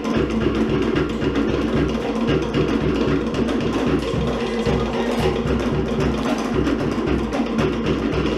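Live Cook Islands drum ensemble playing a fast, driving rhythm of wooden slit drums over a deep bass drum, to accompany ura dancing.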